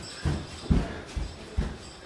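Footsteps on a hard floor: dull thuds at about two a second.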